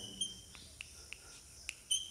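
Chalk writing on a blackboard, heard as a few faint ticks and scrapes, with a short high chirp at the start and another near the end.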